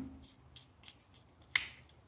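A screwdriver working a terminal screw on a plastic 8-pin relay socket: a few faint ticks, then one sharp click about one and a half seconds in.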